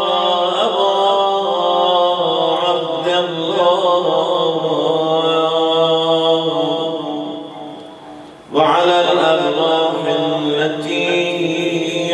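A man chanting a rawza, a mournful Muharram elegy, into a microphone in long, drawn-out held notes. His voice tapers off a little after eight seconds and takes up again at full strength moments later.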